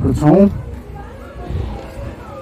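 A man's voice drawing out a final word with a rising pitch in the first half-second, followed by a quieter background with no clear source.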